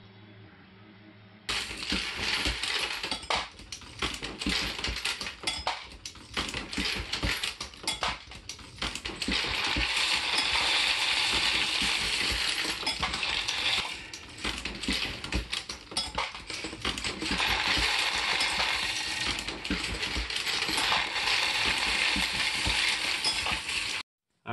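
Copper-jacketed bullets clattering and clinking against one another in a 3D-printed bullet feeder bowl as its rotating collator plate churns them. It is a dense, continuous run of small metallic clicks that starts about a second and a half in.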